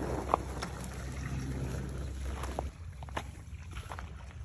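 Wind rumbling on the phone's microphone, stopping suddenly after about two and a half seconds, followed by a few light clicks and knocks.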